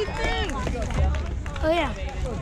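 High-pitched children's voices chattering, with a low rumble of wind on the microphone underneath.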